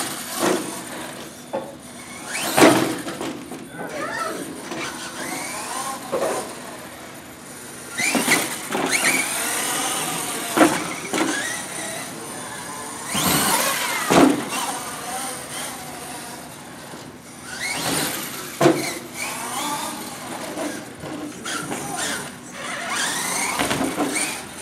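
A radio-controlled monster truck's motor whining, rising and falling as it is throttled, broken by several sharp thuds and clatters as the truck lands jumps and flips on the carpeted track.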